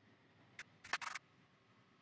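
A few sharp computer mouse clicks: one about half a second in, then a quick cluster near one second, in otherwise near silence.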